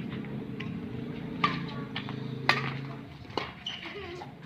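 Badminton rackets striking the shuttlecock in a rally: a run of sharp hits, the two loudest about a second and a half and two and a half seconds in, over a steady low hum.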